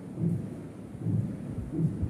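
Dry-erase marker writing on a wall-mounted whiteboard: a run of soft, low thuds and rubs, a few a second, as the strokes of a word are made.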